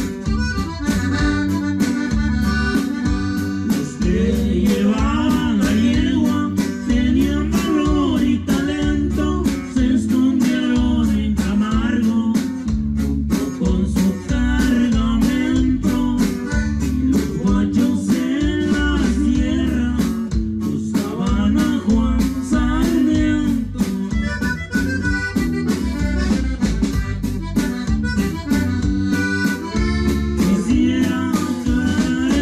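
Live norteño music: a button accordion plays the melody over guitar and a drum kit keeping a steady beat.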